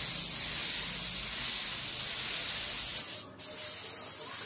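Compressed-air paint spray gun with a gravity-feed cup spraying paint, a steady loud hiss. The hiss breaks off for a moment a little after three seconds, then starts again slightly quieter.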